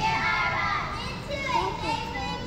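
Many children's voices overlapping in a large hall, with no clear words.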